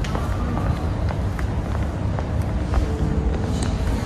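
Footsteps on a tiled showroom floor with a steady low rumble of phone handling noise, as someone walks around the car.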